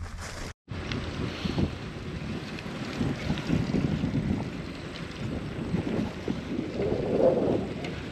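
Wind buffeting the microphone of a camera on a moving bicycle: a steady, rumbling rush of noise that starts after a brief dropout about half a second in and swells slightly near the end.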